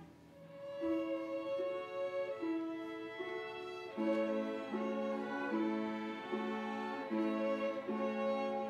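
String orchestra playing a classical piece. After a brief lull at the end of a phrase, a melody on bowed strings resumes, and about halfway through lower strings join with steadily repeated notes, making the music fuller.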